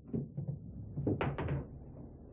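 Pool balls rolling across the table cloth with a low rumble and knocking together just after the cue strike, then a quick cluster of sharp clacks about a second in as the cue ball hits the two eight balls and they carry off the cushions.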